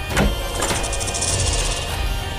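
Dramatic background score with a sudden falling whoosh sound effect just after the start, followed by a high, fast shimmering rattle lasting about a second and a half.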